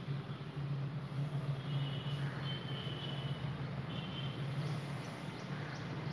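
Chalk drawing a line on a chalkboard, giving a few faint, brief high squeaks over a steady low room hum.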